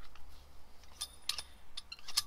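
A few light metallic clicks and clinks from a coilover strut assembly being handled and turned, mostly in the second half, over a low steady hum.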